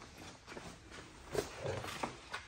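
Sheet of window tint film flexing and rustling as it is handled, with a louder sharp rustle about one and a half seconds in.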